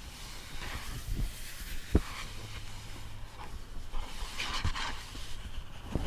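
Fingers brushing and rubbing across the paper page of a hardback picture book, soft rustling with one sharp tap about two seconds in.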